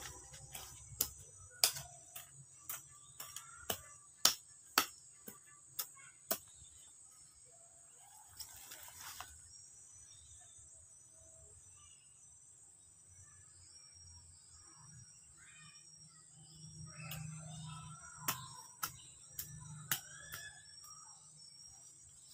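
Small hand hoe chopping into garden soil, a run of sharp knocks about two a second over the first six seconds, with a few more near the end. A steady high insect trill runs underneath.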